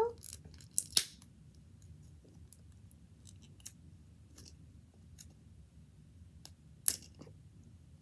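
Plastic wrapping on a Mini Brands capsule ball being picked and peeled off with fingernails: sporadic crackles and sharp clicks, a few louder ones about a second in and near the end.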